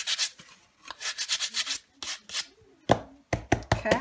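Brown paper rubbed in quick strokes over dried, textured paint to sand it smooth, followed by a few knocks near the end.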